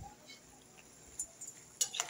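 Faint bubbling of a pot of vegetables at the boil, with a few soft pops about a second in and near the end.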